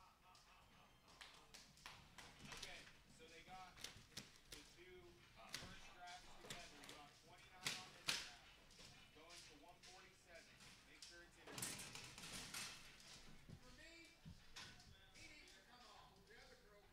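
Faint, indistinct voices of people talking, with scattered taps and two sharp knocks about half a second apart near the middle.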